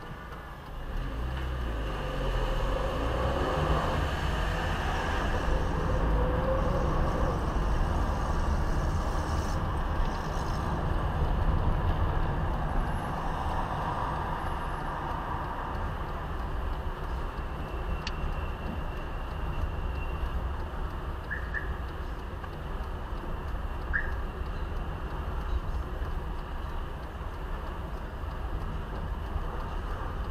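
A car's engine and road noise heard from inside the cabin: the car pulls away from a standstill about a second in, the engine note rising, then settles into a steady low rumble of driving.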